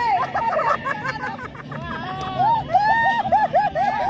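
A group of people talking and calling out at once, several voices overlapping. In the second half one voice gives a quick run of short, repeated high calls.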